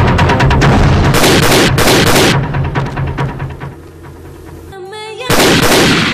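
Rapid automatic gunfire sound effects with loud blasts about one and two seconds in. The firing thins out and fades by about four seconds, and one more loud blast comes near the end. Background music runs underneath.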